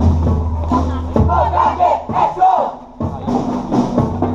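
School marching band: the brass holds a low note, then a group of voices shouts together for about a second, and after a short dip the drums and brass come back in near the end.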